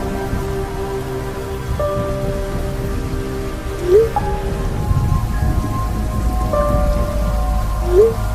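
Rain and thunder sound effect, with steady rain and a low thunder rumble swelling in the second half, under held ambient music tones. A short rising message blip sounds about four seconds in and again at the end, each as a new text message appears.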